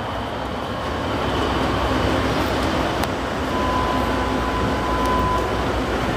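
Steady traffic noise on a busy city street, with a thin steady high tone lasting under two seconds in the second half.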